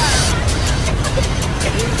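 Steady loud rumble and rushing hiss of a jet airliner in flight, heard from inside the cabin as a dramatized sound effect.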